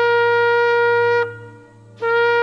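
A shofar blown in a long steady blast on one pitch that stops about a second in, with the next blast starting right at the end.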